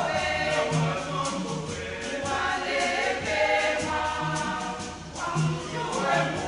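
Mixed church choir singing a wedding song in harmony, over a regular percussion beat.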